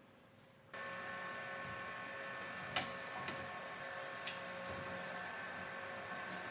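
Near silence, then about a second in a steady machine hum with several fixed tones sets in, broken by a few light clicks.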